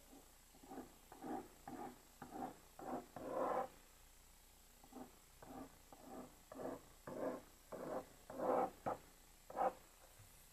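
Pen strokes scratching on paper as lines are drawn: a quick series of short strokes with a brief pause about four seconds in, one longer stroke just before it.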